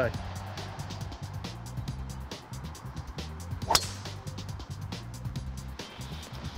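Background music with a steady beat; about two-thirds of the way in, a single sharp crack of a golf club striking a ball teed up high.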